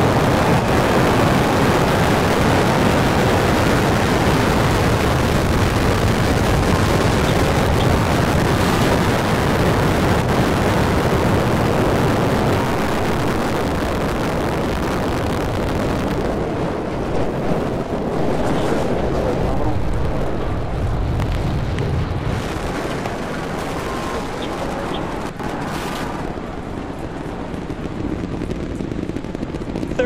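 Starship Super Heavy booster's 33 Raptor engines at liftoff: a loud, continuous rumble that slowly fades as the rocket climbs away, its high end dropping off about sixteen seconds in.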